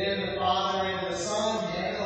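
A voice chanting liturgy in long, held notes, sung rather than spoken.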